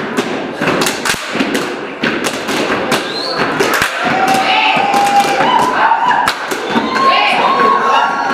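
Gumboot dancers stamping and slapping their rubber boots, a quick run of sharp thuds and smacks, with voices calling out over it in the second half.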